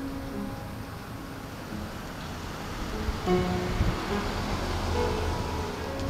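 A public street piano being played, its notes ringing out and echoing along the street.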